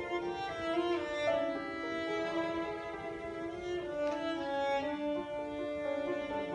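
A cello playing an Armenian melody of long bowed notes, with a double bass playing beneath it.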